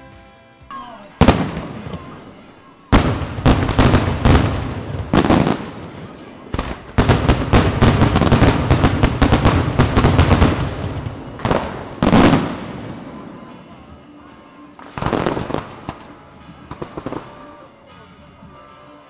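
Daytime fireworks: aerial shells going off in sharp, loud bangs, a few spaced-out reports at first, then a dense rapid barrage lasting several seconds, then a few more scattered bangs.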